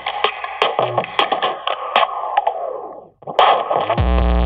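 DJ scratching records on turntables with sharp beat hits, in a hip-hop music intro. The sound fades away about three seconds in, breaks off briefly, then a short loud burst comes just before the end.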